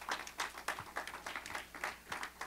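Church congregation applauding, a moderate spatter of irregular hand claps.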